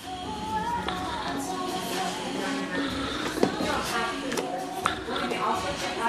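Background music playing in a room, with indistinct voices and a few short knocks.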